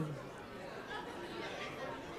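Low background chatter of a congregation, many people talking among themselves at once.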